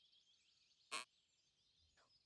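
Near silence, broken once about a second in by a single brief, faint burst of noise.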